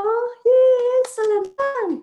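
A woman singing a children's greeting song in Mandarin, unaccompanied, in held notes; the last note slides down just before the end.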